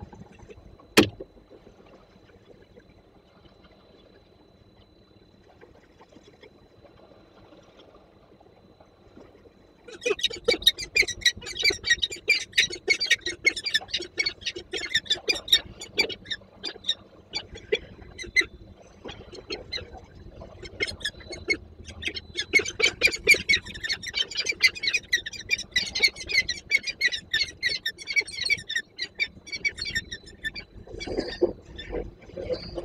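Peregrine falcon giving a long run of loud, rapid, harsh squawking calls that starts about ten seconds in, the begging of a falcon trying to get a share of another's prey. Before the calling it is quiet apart from a single knock about a second in.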